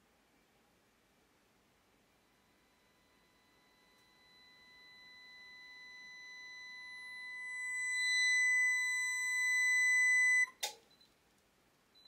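A 1 kHz sine-wave test tone driven by a Crown XLS 2000 amplifier bridged into a 4-ohm load. It grows steadily louder and turns harsher as the amp nears clipping. About ten and a half seconds in it cuts off abruptly with a sharp click, as the power meter feeding the amp trips when the draw exceeds 3,000 watts.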